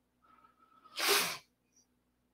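A single short, hissing burst of breath from a man close to the microphone, about a second in, lasting about half a second, with near silence around it.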